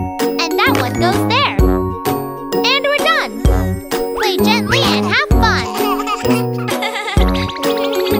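Children's song: a cartoon child's voice singing over bouncy backing music, with a low drum beat about every two seconds.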